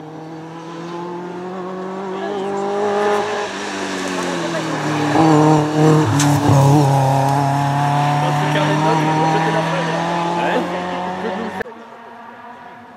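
Engine of a Seven-style open-wheeled sports car driven through a hairpin on a rally stage: the revs climb, drop around four seconds in, and the engine is loudest as the car passes close by. It then pulls away at a steady pitch until the sound cuts off suddenly just before the end.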